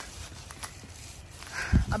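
Footsteps on the ground of a backyard over a faint steady hiss, with a short low thump near the end.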